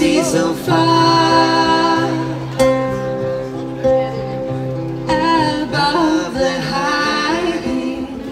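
Live acoustic music: two acoustic guitars playing together, with a sung vocal line that swells with vibrato partway through.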